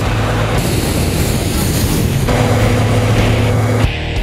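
Loud, steady rushing noise of a fuel-fed live-fire training burn, with a low steady hum underneath; it cuts off abruptly just before the end.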